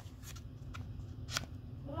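Stiff cardboard pages of a board book being handled and turned: a few short, crisp flicks, the sharpest a little past halfway.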